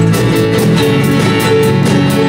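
A live band playing an upbeat song: strummed acoustic guitar and ukulele over a drum kit keeping a steady, even beat.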